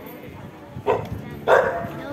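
A dog barking twice in quick succession, the second bark the louder, over crowd noise.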